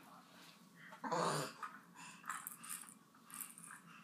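Baby making a short, rough, growl-like grunt about a second in, then a few soft breathy puffs.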